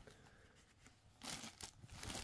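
Faint rustling of a cloth shirt being unfolded and turned over by hand, coming in a few soft bursts in the second half after a near-silent first second.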